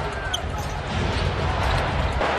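A basketball being dribbled on a hardwood court under steady arena crowd noise.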